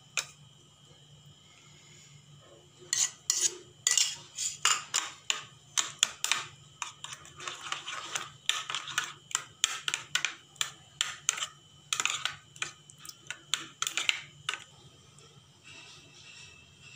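A steel spoon clinking and scraping against a ceramic bowl in quick, irregular strokes as yogurt is stirred into green chutney. It starts about three seconds in and stops shortly before the end.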